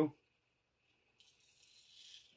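Faint rasping of string being drawn through a small hole drilled in a plastic bottle cap, starting a little over a second in.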